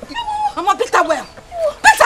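Women's voices crying out in a heated quarrel: short wordless exclamations whose pitch slides up and down.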